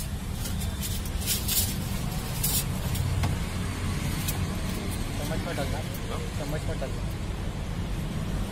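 Street ambience: a steady low traffic rumble, with a few sharp clicks and taps between one and three seconds in and people's voices about five seconds in.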